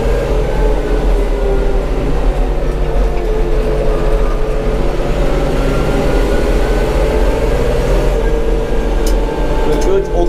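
TÜMOSAN 6065 tractor's diesel engine running steadily at road speed, about 37 km/h, heard from inside the cab.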